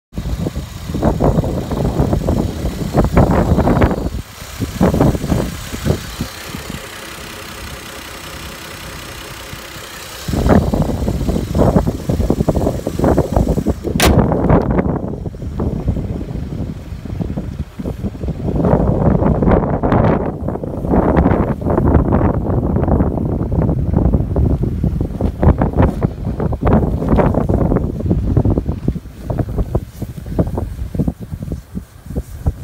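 2003 Lexus GS300's straight-six engine idling steadily, heard clearly in a calmer stretch about six to ten seconds in. For most of the rest, gusts of wind rumble loudly on the microphone over it, with one sharp click about halfway through.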